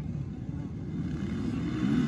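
Several motocross bikes' engines running at racing speed in the distance as the pack rides away around the dirt track.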